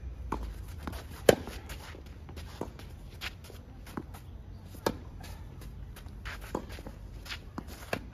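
Tennis rally on a clay court: a string of sharp racket-on-ball strikes every second or so, the loudest about a second in, with fainter hits and ball bounces from the far end. Footsteps and sliding on the clay run between the hits.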